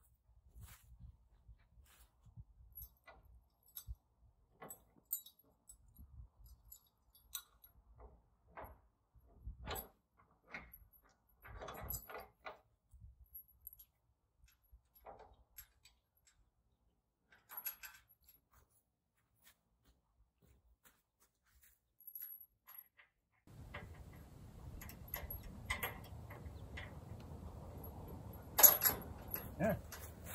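Scattered metallic clicks and clinks of steel hitch pins, pin chain and the wheel-kit tongue of a Priefert squeeze chute being worked by hand to set the hitch height. There are quiet gaps between the sounds, a steady low noise joins in about three-quarters of the way through, and a louder clank comes near the end.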